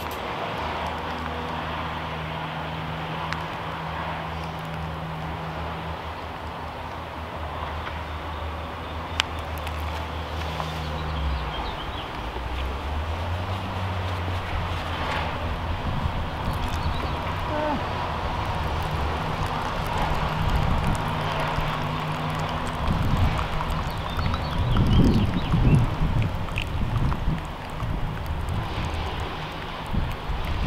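An engine runs nearby in a steady low hum that steps up in pitch about twelve seconds in. Over it, tea is poured from an enamel teapot into a glass, and near the end it is poured in a thin stream from a height.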